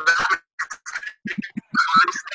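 A person's voice coming through a video call, broken into short garbled fragments with gaps between them: a participant's faulty microphone and poor audio that can't be understood.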